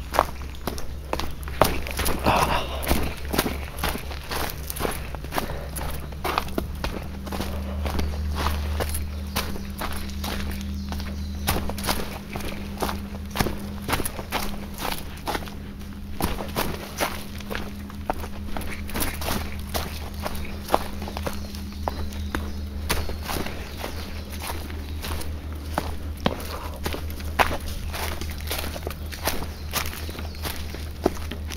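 Footsteps of a hiker walking downhill at a steady pace on a dirt trail littered with dry fallen leaves and rock.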